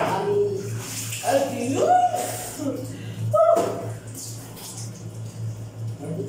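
Water splashing and pouring from a dipper in a small tiled bathroom, with a woman's voice over it and a steady low hum throughout.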